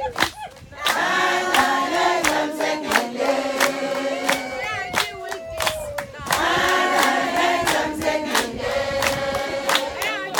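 A large group of women singing together in chorus, with hand claps keeping a beat of about two a second. A single voice slides down in pitch, once at the start and again midway, before the group comes back in.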